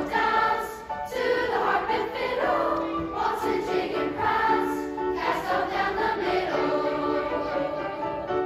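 A children's choir singing with piano accompaniment.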